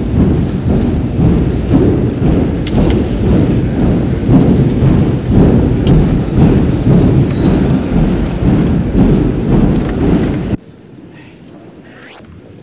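Loud, dense applause from a ceremonial audience, heard muffled on an old film soundtrack, cutting off about ten and a half seconds in.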